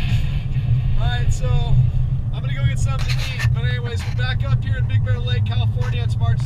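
Car driving, heard from inside the cabin: a steady low rumble of engine and road noise, with a person talking over it from about a second in.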